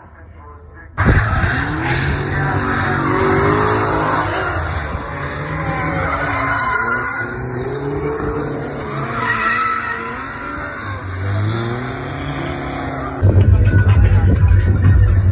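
A drift car's engine revving up and down as it slides, with its tyres skidding and squealing, starting about a second in. Near the end it cuts to louder music with a heavy bass beat.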